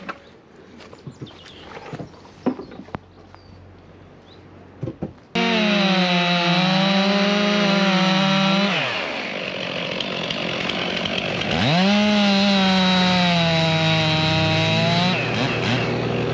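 About five seconds of faint twig crackles, then a two-stroke chainsaw starts loud at high revs, cutting through beech logs. Its revs drop about three seconds in, climb back to full throttle for another cut, and fall away to a lower steady note near the end.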